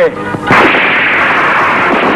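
Film sound effect of a gunshot about half a second in, followed by a dense rush of noise that carries on steadily after it.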